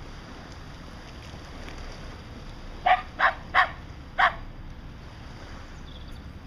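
Shetland sheepdog barking four times in quick succession, the last bark after a slightly longer gap.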